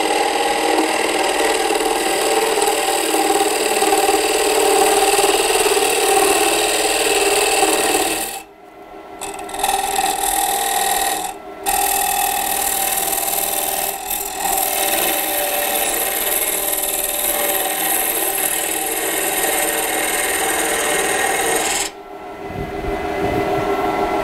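A hand-held turning tool cutting across the face of a wooden bowl blank spinning on a wood lathe: a steady scraping hiss of wood being shaved off, a light finishing cut to clean up the surface. The cut breaks off briefly about eight seconds in, for a moment a few seconds later, and again near the end as the tool comes off the wood.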